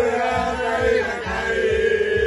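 A group of voices singing a Racing Club football chant together, holding long notes over a steady low beat.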